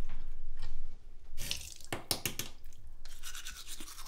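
A toothbrush worked at a running bathroom tap: a low rumble in the first second, then a handful of quick sharp strokes about halfway through, and a faster brushing rasp in the last second.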